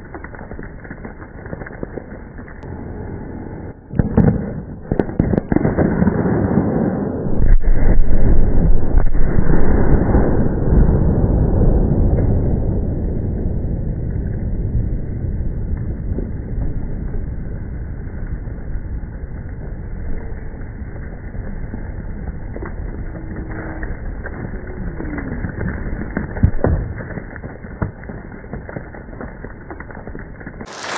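Rock-blasting charges buried under dirt cover going off, heard muffled with no high end. A sharp crack about four seconds in and a few more cracks lead into a long, heavy rumble about seven seconds in that slowly dies away over the following seconds.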